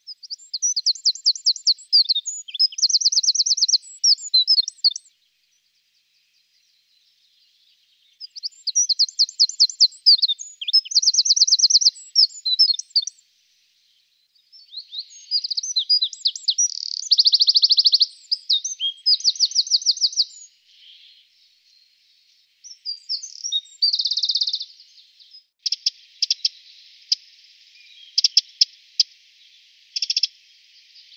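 Eurasian wren male singing: several loud, high song phrases packed with very fast trills, separated by short pauses. Near the end come a series of dry ticking calls.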